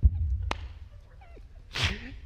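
A man laughing, mostly without voice: a low thump right at the start as he doubles over, a sharp click about half a second in, then a short breathy burst of laughter near the end.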